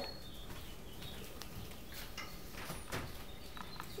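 A few soft clicks of a metal spoon against a small ceramic bowl as a baby is spoon-fed, with a faint high bird chirp in the background.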